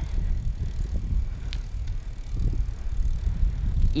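Steady low rumble of a 29-inch BMX bike's tyres rolling on asphalt as it coasts, mixed with wind on the microphone, with one faint click about a second and a half in.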